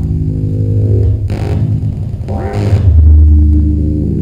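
8-bit synthesizer on bare circuit boards playing a loud, deep droning bass tone with buzzy overtones that shifts pitch several times. Two hissing noise bursts cut through, about a second in and again past the middle, the second sweeping upward.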